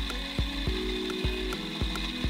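Electric coffee grinder running and grinding beans: a steady high whine over a rough grinding noise. A regular beat from background music runs underneath.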